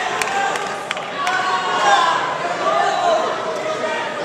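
Fight spectators shouting and yelling, many voices overlapping, with a few sharp clicks or claps in the first second and a half.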